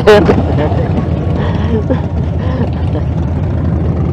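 Motorcycle engines running at low revs in a stopped group of bikes, a steady low rumble.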